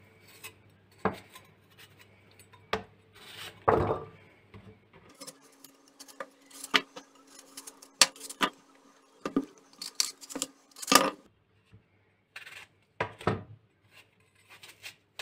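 Kitchen knife slicing an unpeeled red apple held in the hand: irregular crisp cuts and clicks as the blade goes through the fruit, a few louder than the rest.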